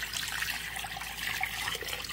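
Water being poured into a cooking pot over a chicken and whole vegetables: a steady pouring and splashing. This is the litre of water going in for the soup.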